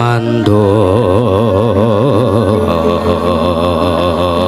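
A man chanting in the manner of a dalang's suluk: a short note, then one long note held with a wide, even vibrato from about half a second in.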